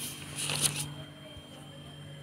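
Felt-tip highlighter drawn across notebook paper in one short scratchy stroke about half a second in, marking an answer.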